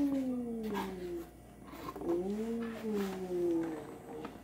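A woman's voice making two long, drawn-out "ooh" sounds, each rising briefly and then sliding down in pitch, with a short pause between them.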